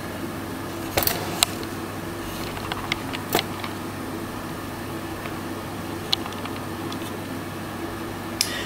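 Cook Essentials air fryer's fan running with a steady hum, with a few light clicks and taps, the clearest about a second in and again past three seconds.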